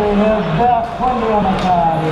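Voices talking in a large, reverberant sports hall, with no distinct other sound standing out.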